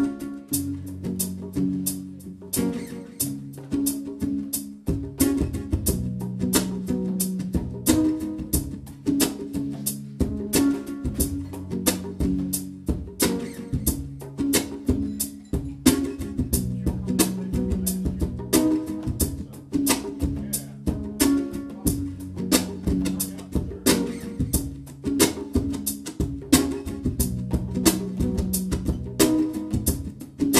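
Acoustic guitar played live in a steady groove, sustained low and mid notes under a quick, even percussive beat.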